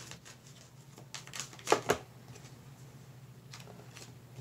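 Tarot cards shuffled by hand: a rapid run of card clicks a little after a second in, and a shorter run near the end.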